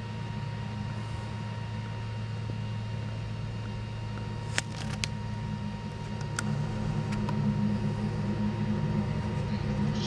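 Jet engines of a Ryanair Boeing 737 airliner running on the runway, a steady low rumble that grows louder over the second half.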